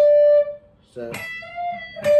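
Electric guitar with a clean tone picking a single high note on the high E string, held about half a second and then stopped short. A slightly higher note rings briefly in the second half, part of the lick's half-step bend up the high E.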